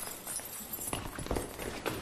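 A few sharp, irregular knocks, roughly one every half second.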